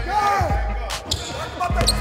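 Basketball practice on a gym court: sneakers squeaking in quick chirps and a basketball bouncing, with background music and a steady low bass underneath.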